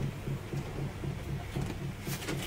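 A low mechanical hum pulsing evenly about four times a second, over faint background noise.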